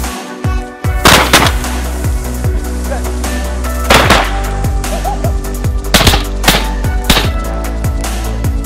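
Shotguns firing in several blasts over electronic music with a steady beat: two shots about a second in, one about four seconds in, and three more in quick succession from about six seconds on.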